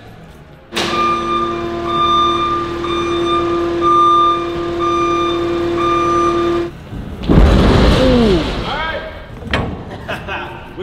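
Delivery truck and trailer unloading a steel shipping container. A steady drone with a held tone runs for about six seconds and cuts off suddenly. It is followed by a loud, noisy groan that falls in pitch and then rises.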